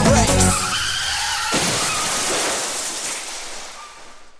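The dance track's beat stops about half a second in and gives way to a car sound effect: a wavering tyre squeal and a burst of crash-like noise about a second and a half in, fading away toward the end.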